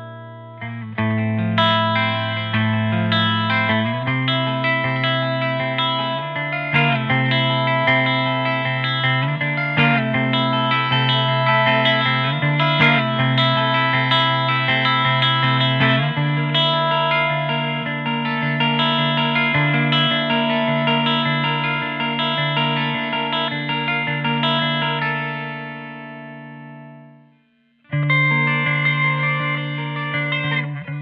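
Eastwood MRG electric octave mandolin, tuned GDAE with flat-wound strings, playing a picked melody over ringing low notes. The notes ring out and fade to silence, then a new passage starts abruptly near the end.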